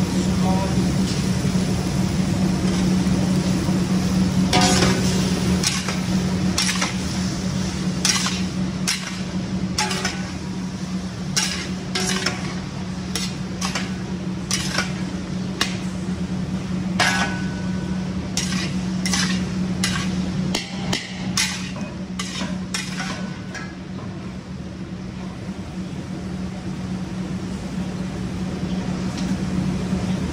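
A long metal spatula scraping and knocking against a large iron wok as fusilli pasta and vegetables are stir-fried, in irregular clatters over a steady low hum and light sizzling.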